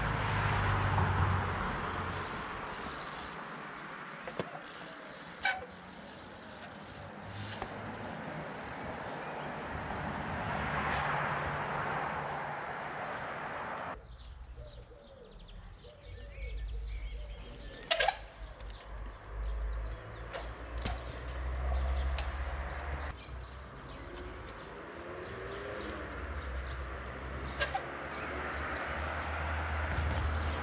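Road traffic passing on the street alongside, swelling and fading several times, with wind rumbling on the microphone. A few sharp knocks, the loudest about two-thirds of the way through, as the 20-inch trial bike's tyres strike the concrete wall.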